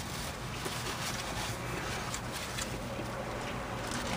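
Low steady background noise inside a car, with a few faint small clicks and rustles.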